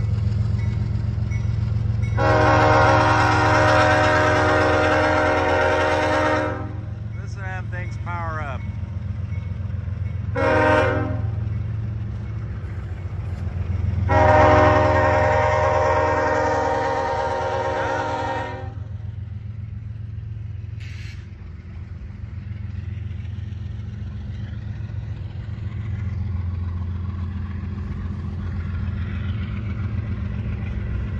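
Diesel freight locomotive's multi-chime air horn sounding a long blast, a short blast and another long blast. Under it runs the steady low rumble of passing Union Pacific locomotives and freight cars.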